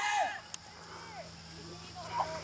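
A short, faint falling call from a distant voice at the start, then a quiet outdoor background with a faint steady low hum.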